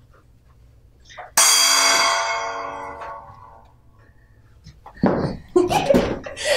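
A gong struck once, about a second and a half in, ringing with many tones and slowly fading over about three seconds: the signal that starts the round.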